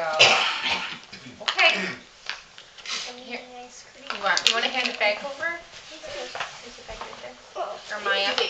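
Indistinct talk and laughter from several people, including a small child's voice, in a room.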